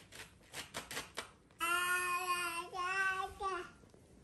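Several sharp clicks of a toddler pressing computer keyboard keys, then the toddler's voice holding a long, steady sung 'aaah', briefly broken near the middle.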